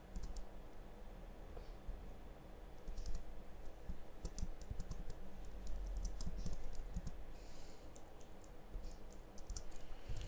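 Computer keyboard being typed on in short, irregular bursts of keystrokes with pauses between them.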